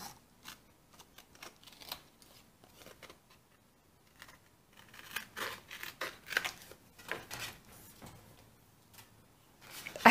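Small scissors snipping the corners off a scored piece of kraft cardstock: a scattering of faint, short snips, most of them between about five and eight seconds in.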